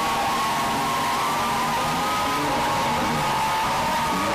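Loud live praise music from a church band and congregation, heavily distorted into a dense hiss, with a few long held notes running through it.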